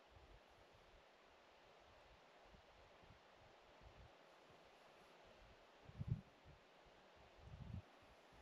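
Near silence: a faint steady hiss, with two brief low rumbles of wind on the microphone, about six seconds in and again near the end.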